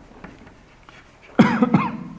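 A man coughs once, a short, sudden burst about one and a half seconds in, after a stretch of quiet room sound.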